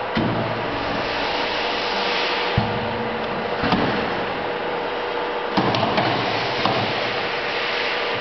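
OCTOPUS automatic carousel screen printer running: a steady whooshing hiss with a faint hum, broken by several sharp knocks from the mechanism as it works.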